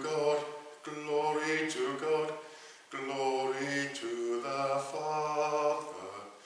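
A man's voice singing a slow chant in held notes, in phrases of about a second with short breaks between them.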